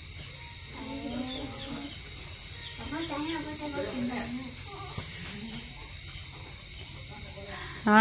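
A steady, high-pitched chorus of insects, with faint voices talking in the background.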